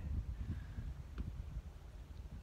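Wind rumbling unevenly on a phone microphone, with a faint click a little past a second in.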